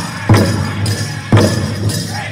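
Powwow big drum struck in heavy unison beats by a drum group, two beats about a second apart, over the steady jingle of dancers' ankle bells.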